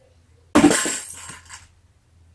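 A sudden crash about half a second in, with a clinking, shattering tail that dies away over about a second and two smaller clinks after it, like glass breaking.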